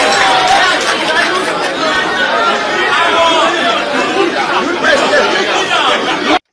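A man speaking through a microphone, with many voices of a crowd chattering over and around him.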